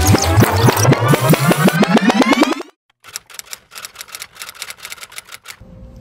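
Edited-in sound effects: a pitched sound rising in pitch with ticks that speed up, cutting off suddenly about two and a half seconds in, then a run of rapid clicks. A low steady hum comes in near the end.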